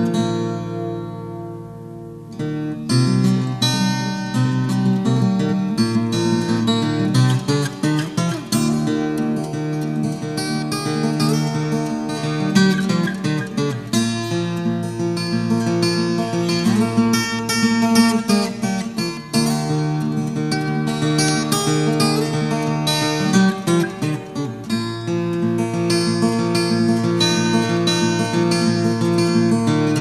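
Solo acoustic guitar playing an instrumental piece with picked notes. A chord rings out and fades at the start, and the playing picks up again about two and a half seconds in.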